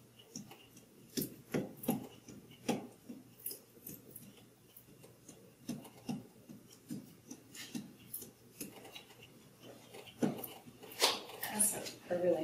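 Scattered light clicks, taps and knocks of painting tools and materials being handled at a worktable, irregular and unhurried.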